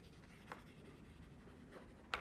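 Faint chalk writing on a blackboard, with a light tap of the chalk about half a second in.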